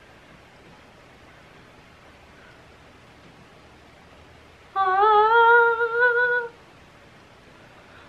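A woman singing one held 'ah' note, just under two seconds long, its pitch wavering and rising slightly, about five seconds in. Before it there is only faint room hiss.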